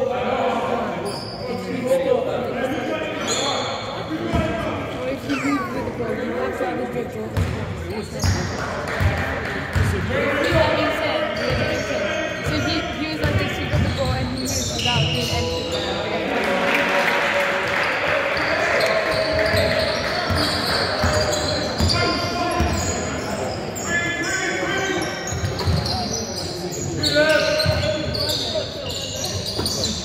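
A basketball bouncing repeatedly on a sports-hall floor as players dribble and pass during a game, echoing in the large hall. Players' voices call out over it.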